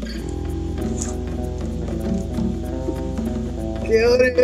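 A recorded song playing, with sustained chords over a steady beat; a fuller set of notes comes in just after the start.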